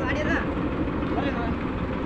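Motorcycle running at low road speed, a steady low drone with road and wind noise, heard from the rider's seat. A voice speaks briefly at the start.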